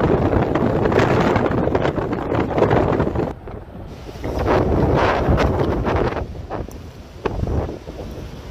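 Blizzard wind buffeting the microphone in loud gusts. It eases about three seconds in, picks up again a second later, then fades with a brief last gust near the end.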